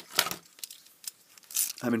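Clear plastic wrapping on a paper sweet tray crinkling as it is handled, in a couple of short rustles.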